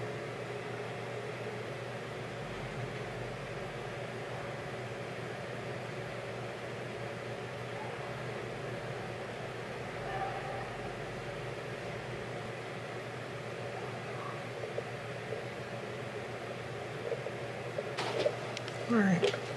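Steady, even room hum and hiss from a machine running in the background, unchanging throughout.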